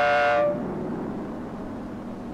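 A bus's multi-tone air horn holding one long chord-like blast that cuts off about half a second in, followed by the low steady rumble of the bus running.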